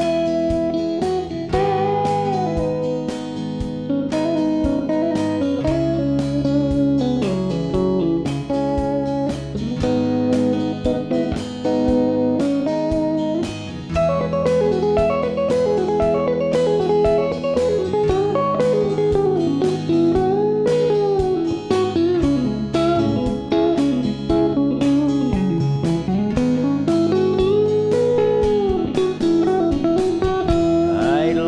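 Instrumental break of a rock song: an electric guitar plays a lead solo with many string bends over rhythm guitar and a steady drum beat.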